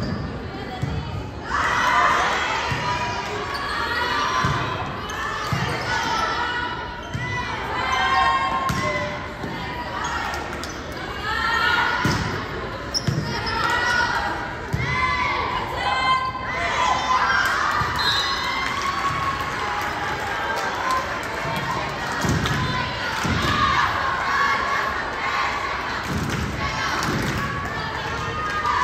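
Volleyball rally in a gym: the ball is hit and bounces with dull thumps every few seconds, among high-pitched shouts and calls from players and spectators.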